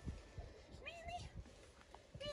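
A mini Aussiedoodle puppy gives one short, high whine that rises in pitch, about a second in, over a few faint low knocks.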